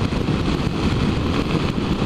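Steady wind rush over the microphone mixed with the single-cylinder engine of a BMW F650ST motorcycle running at cruising speed on a highway.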